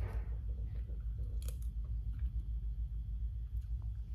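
Two people tasting soup from spoons: faint sipping and chewing, with a light spoon click about a second and a half in, over a steady low room hum.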